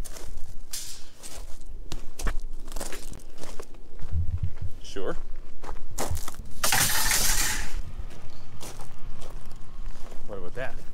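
Footsteps crunching on gravel, with the clicks and knocks of a long vent grille being handled, and a loud rustling scrape lasting about a second near the seven-second mark.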